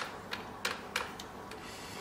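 A run of sharp, evenly spaced clicks, about three a second, that thin out and stop about a second and a half in.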